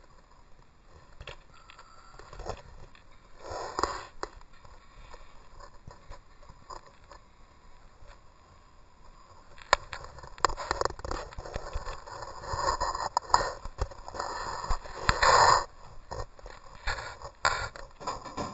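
Scrapes and knocks of a camera being handled, in irregular bursts: a short cluster a few seconds in, then a denser, louder run through the second half.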